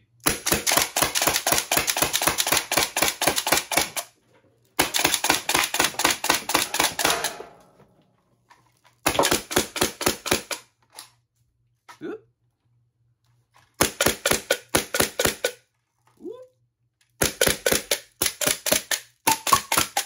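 Compressed-air (HPA, 100 psi) full-auto Nerf blaster firing in rapid bursts of about ten sharp pops a second, a solenoid valve driving a pneumatic pusher for each dart. A long burst of about four seconds opens, followed by several shorter bursts with pauses between them.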